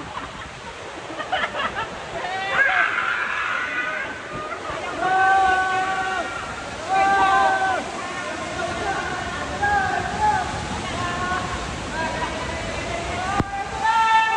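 Indoor water park ambience: a steady wash of splashing water under people's voices calling and shouting, several calls held for about a second, with a sharp click near the end.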